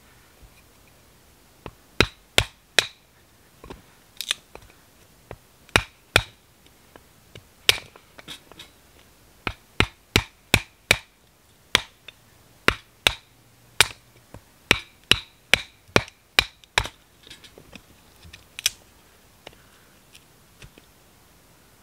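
Batoning firewood: a wooden baton knocking on the spine of a knife to split a log, a long run of sharp knocks, irregular and often in quick runs of two to five, with short pauses between the runs.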